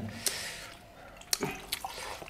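Soft eating sounds at a meal table: a few short, wet clicks and smacks from chewing mouths and fingers working food, spread across a quiet stretch.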